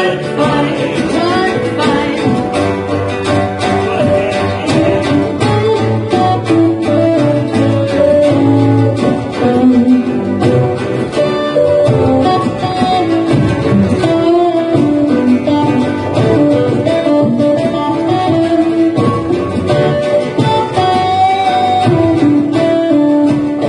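A ukulele band plays an instrumental passage: strummed ukuleles, a bass line and a drum kit keeping a steady beat, with a melody line over the top.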